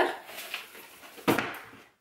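A cardboard shipping box being handled: faint rustling, then a sudden thump with rustle about a second and a quarter in that fades within half a second.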